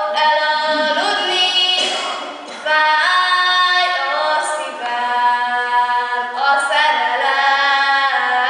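A young woman singing a folk song solo and unaccompanied, holding notes and stepping between pitches, with a short breath about two and a half seconds in.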